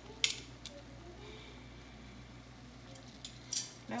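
A metal spoon clinking against a stainless steel pot twice near the start and a few times again near the end, over the faint steady hiss of a pot of shrimp at a rolling boil.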